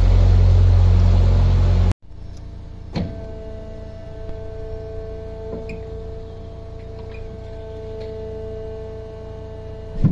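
A narrowboat's engine running with a low rumble for about two seconds, cut off abruptly. About a second later there is a click, then a steady electric hum-whine from the lock's hydraulic gate machinery as its ram drives the gate.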